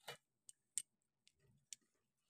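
Faint, irregular light clicks, five or six in two seconds, as a hand mixes rice in a steel plate.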